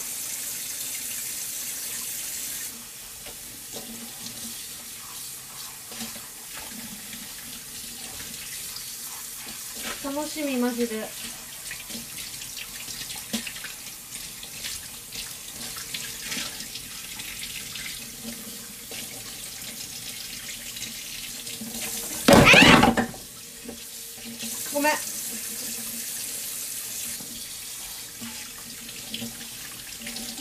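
Steady rushing noise like running water from a tap, louder for the first few seconds, with one loud, short burst of noise a little past two-thirds of the way through.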